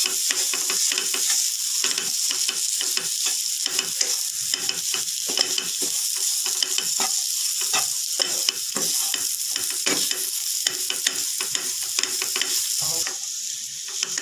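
A wooden spatula stirring and breaking up potatoes and vegetables frying in oil in a non-stick pan, with steady sizzling and many quick scraping and tapping strokes against the pan. The sizzle thins out about a second before the end.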